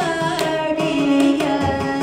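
Carnatic classical music: a male vocalist sings a held, gliding melodic line, shadowed by violin, with a few mridangam strokes underneath.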